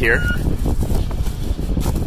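A reversing alarm beeps at a steady pitch and stops just after the start, over a low, uneven rumble that runs on underneath.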